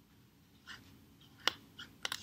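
Soft felt-tip marker strokes on a paper plate, with a sharp click about one and a half seconds in.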